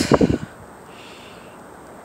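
A brief low rumble of microphone noise in the first half second, then a faint, steady background hiss.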